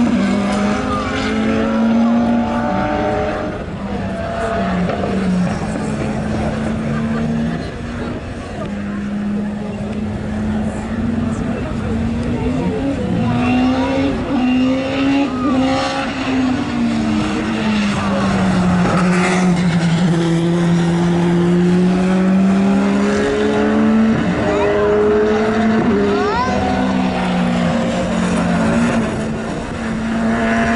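Two racing cars, a 1996 Renault Laguna BTCC touring car and a BMW E30 Group H hillclimb car, lapping hard. Their engines rev up and drop back through the gears again and again, the pitch rising and falling as they brake, accelerate and pass.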